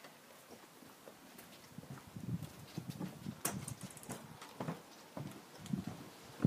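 Footsteps walking up a ramp: a run of soft, irregular thuds that starts about two seconds in, with a few sharper clicks among them.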